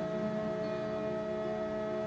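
A long chord held steady in a gospel song, sung by three women into microphones, with no change in pitch and no breaks.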